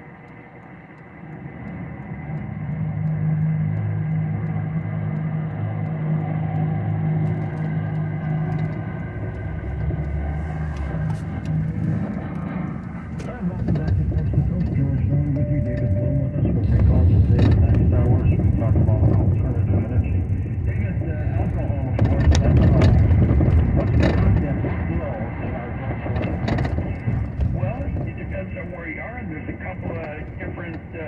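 Car engine and road noise heard from inside the cabin as the car pulls away from a stop and drives. The rumble grows heavier about halfway through. A voice, likely the car radio, sounds faintly underneath.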